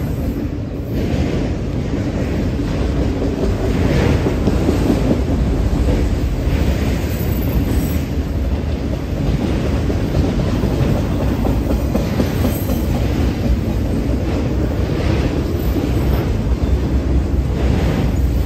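Freight train of autorack cars rolling past close by: a steady rumble of steel wheels on rail, with occasional clacks as the wheels cross rail joints.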